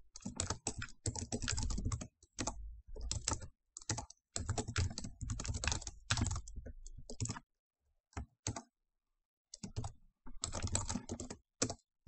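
Computer keyboard typing in quick runs of keystrokes, with a lull of about two seconds past the middle broken by only a couple of key presses.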